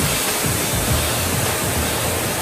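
Steady, loud rushing roar of an aircraft in flight, heard from inside the aircraft, with a low uneven throb underneath.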